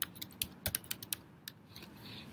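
Typing on a computer keyboard: a quick run of separate key clicks that thins out and stops about a second and a half in.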